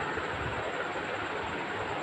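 Steady background noise: an even hiss with a faint high-pitched whine running through it.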